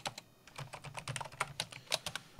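Computer keyboard being typed: a quick run of keystroke clicks with a short pause just after the start, as a short command is typed and entered. The loudest keystroke comes near the end.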